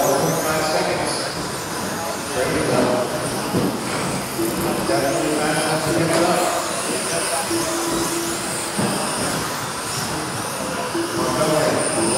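Electric 1/10-scale RC buggies with 17.5-turn brushless motors racing on a carpet track. The motor and gear whine rises and falls with throttle as the cars pass, and a held tone cuts in and out several times.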